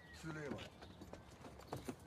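Faint footsteps and a car door being opened: a few light clicks and a short knock from the handle and latch.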